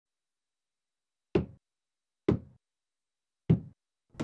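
Three single knocks, about a second apart, with silence between them.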